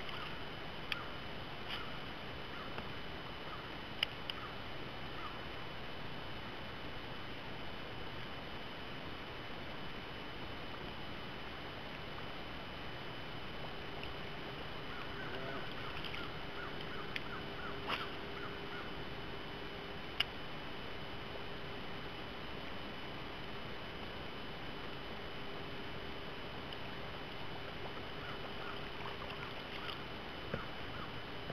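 Steady outdoor background hiss on a boat on the water, broken by a few sharp clicks and faint short chirps. A low steady hum sets in about halfway through.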